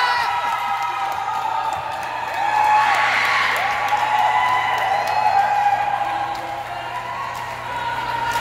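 Volleyball spectators cheering and shouting, many voices overlapping in rising-and-falling whoops, with a swell of cheering about three seconds in.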